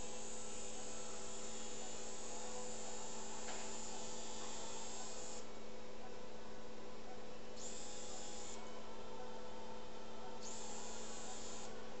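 Steady hum of operating-room arthroscopy equipment, with a high hiss that cuts off about five seconds in and then comes back in two short stretches, around eight seconds and again around ten and a half seconds.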